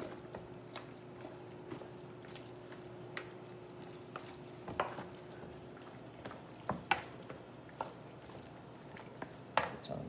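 Wooden spatula stirring and folding raw chicken wings in marinade in a plastic mixing bowl: soft wet squishes and scattered light knocks of the spatula on the bowl, a few sharper ones about five seconds in, around seven seconds and near the end. A faint steady hum runs underneath until about six seconds in.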